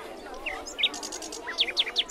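Small birds chirping: a few short, sharp rising chirps and a quick rattling trill in the middle, each chirp standing out loudly against a faint background.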